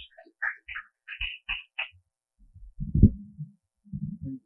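Light scattered knocks and shuffles, then a loud low thump about three seconds in: handling noise on the podium microphone as the next reader steps up to it.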